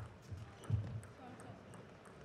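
Table tennis rally: the plastic ball clicking off the bats and table several times a second, over low thuds of the players' footwork.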